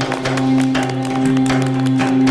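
Upbeat music from the studio band, held low notes under a regular drum beat of about four hits a second, with some hand-clapping over it.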